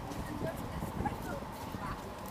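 Indistinct voices of passers-by over a steady low rumble of outdoor background noise.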